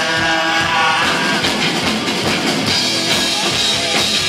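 A live rock band playing: electric guitar, bass guitar and drum kit, loud and continuous.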